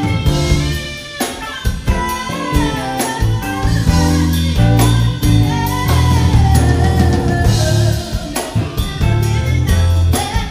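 A live band playing: drum kit, guitar and keyboards, with a melody line that slides up and down in pitch.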